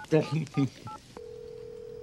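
Touch-tone beeps as digits are keyed on a cordless phone handset, several short two-note tones, with a man counting the numbers aloud in Arabic. A little over a second in, the keying stops and a steady low telephone tone comes on the line.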